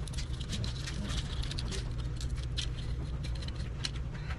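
Razor blade scraper scraping old adhesive tape residue off a tile floor in rapid, irregular strokes, over a steady low hum.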